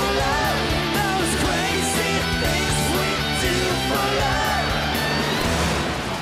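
Live glam-rock band playing at full volume: distorted electric guitars, bass and drums over a steady beat, with a bending melody line on top. The band stops together right at the end.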